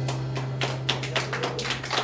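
Scattered hand clapping from a small audience at the end of a song, with a low note still ringing underneath.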